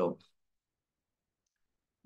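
Near silence: a spoken word ends, then the audio goes completely dead, with no room tone.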